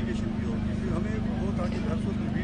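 A man talking continuously over a loud, steady low hum that runs under the whole passage.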